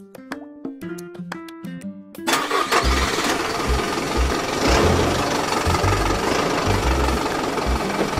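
A short chiming music jingle, then from about two seconds in an engine sound effect: a machine's engine starting up and running loudly with uneven low chugs.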